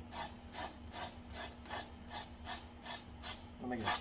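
Palette knife scraping oil paint across a stretched canvas in short repeated strokes, about two a second.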